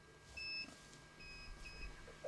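Three short, faint, high-pitched electronic beeps: one about half a second in, then two close together near the end.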